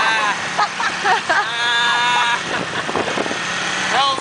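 Motor scooters riding along a street: a steady engine hum under rushing wind and road noise. A voice calls out in two stretches in the first half.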